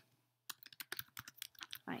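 Computer keyboard typing: a quick run of about a dozen keystrokes over a second and a half as a word is typed into a text field.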